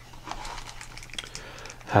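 Clear plastic bag crinkling as it is handled and lifted out of a cardboard box: a run of light, irregular crackles.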